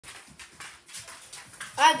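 A dog panting close by, a run of short breaths repeating a few times a second, before a boy says "Hi" near the end.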